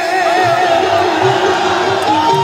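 Live Baul folk song amplified through a stage PA: a woman's sung line wavering with vibrato over instrumental accompaniment, with soft low drum beats about once a second and crowd noise beneath.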